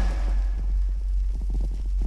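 A deep bass note held and slowly dying away as a rap track ends, with faint scattered ticks above it.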